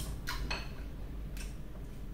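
A few light clicks of chopsticks against ceramic bowls and dishes at a dinner table: one at the start, two close together about half a second in, and one more a second later.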